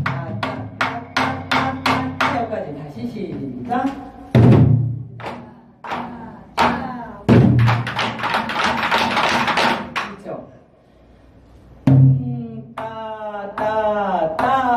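Sticks playing a Korean barrel drum (buk) in the nanta prelude rhythm "dung-tta-tta-tta": a deep boom on the drumhead every few seconds, each followed by a run of sharp stick clicks, with a voice over it.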